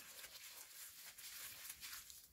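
Near silence: faint room tone with a few very soft ticks.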